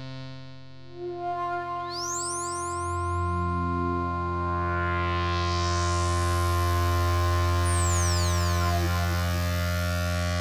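Ambient synthesizer music: sustained pad chords over a deep bass drone, slowly swelling in level, with high rising sweeps about two seconds in and falling sweeps near the eight-second mark.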